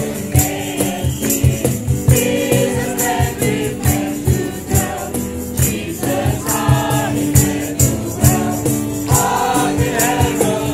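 A mixed group of carolers singing a Christmas carol together over an accompaniment with a steady beat.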